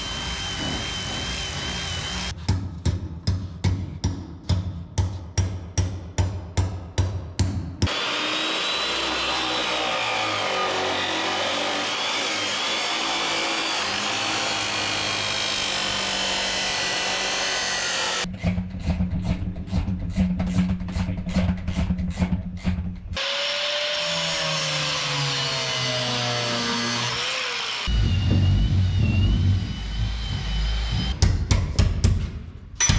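An abrasive cut-off saw cuts through steel pipe for about ten seconds in the middle, a steady grinding with a wavering high whine. A cordless drill whines briefly at the start and near the end, and background music with a beat plays through much of it.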